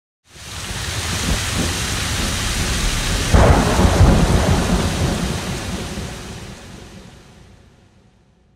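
Rain falling, with a loud rumble of thunder breaking about three seconds in; the storm sound fades out over the last few seconds.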